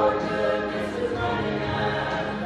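Mixed church choir of men's and women's voices singing a hymn in harmony.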